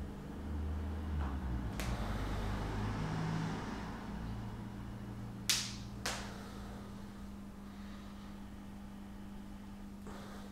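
Quiet movement sounds of a person working through a bodyweight press on a rubber gym floor, with low rumbling shuffles in the first few seconds and two sharp clicks about five and a half and six seconds in, over a steady low hum.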